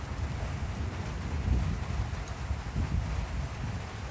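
Thunderstorm outdoors: wind buffeting the microphone over a steady hiss of rain, with low rumbling gusts that swell twice.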